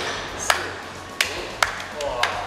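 Three sharp single hand claps, irregularly spaced.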